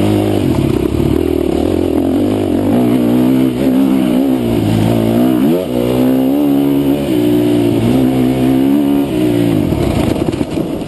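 Husqvarna dirt bike engine running under load on a trail ride, its revs rising and falling with the throttle, with a quick climb in revs about halfway through.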